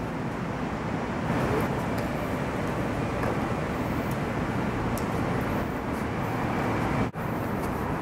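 Steady traffic and road noise rumbling, with faint, irregular clicks of stiletto heels striking concrete. The sound breaks off briefly about seven seconds in.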